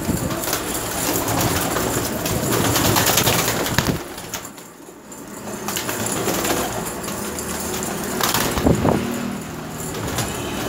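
Domestic pigeons cooing in low, repeated coos, with a quieter lull about four to five seconds in.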